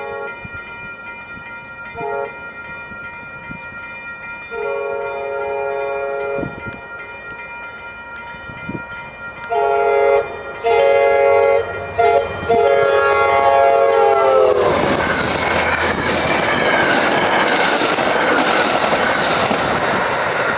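MBTA commuter train's horn sounding repeatedly on approach to a grade crossing, several long blasts and a short one, the last held until the train reaches the crossing and sagging slightly in pitch as it goes by. Crossing bells ring steadily throughout. From about fifteen seconds in, the loud, even rush and clatter of the train passing takes over.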